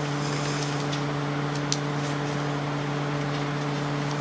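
Room tone: a steady low hum with an even hiss, broken only by a couple of faint short ticks.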